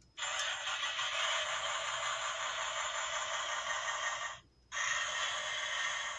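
Electronic sound effect played through a toy rescue truck's small built-in speaker: a steady hiss that stops briefly about four and a half seconds in, then starts again.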